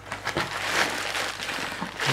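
Cardboard box flaps being opened and plastic packing material rustling and crinkling as it is pulled out, with a few small clicks.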